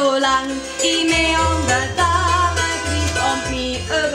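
Live Appenzell folk song: a woman singing, with a double bass playing low notes and a hammered dulcimer (hackbrett) accompanying.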